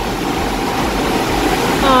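Steady rushing background noise with a low rumble and no distinct events: the ambient drone of an indoor aquarium hall.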